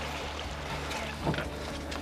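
Twin Mercury outboard motors running at low speed, a steady low hum under the wash of water along the hull, with one brief louder sound a little over a second in.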